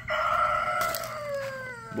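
Rooster crowing: the long drawn-out end of a crow, one held note that slowly sinks in pitch and fades out near the end.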